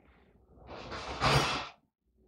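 A person's long breathy sigh, swelling from about half a second in and loudest past the middle, then cutting off abruptly just before the end.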